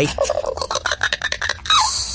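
A comic sound effect of rapid clicking chatter mixed with short squeaks, one falling squeak near the end.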